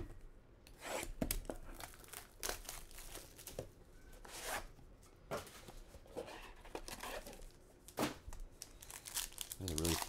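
Hands tearing and crinkling plastic shrink wrap and card packaging, in irregular crackles and rips.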